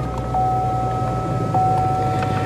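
C7 Corvette's V8 idling just after starting, with a steady electric whine from the power seat and steering column motors moving to the driver-two memory position recalled by the key fob.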